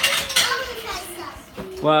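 Crockery and cutlery clinking and clattering, most of it in the first half second, as plates and spoons are handled for serving.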